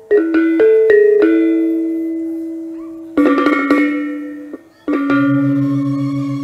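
Balinese trompong, a row of tuned bronze gong-kettles, struck with mallets: a few separate strokes ringing on at different pitches, a quick flurry of strokes about three seconds in, then another stroke near the end. With that last stroke a deep gong enters, its tone throbbing several times a second.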